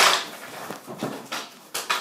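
Ball hockey sticks clacking against the ball and scraping and knocking on a concrete floor in play around the net: a series of sharp knocks, the loudest at the very start.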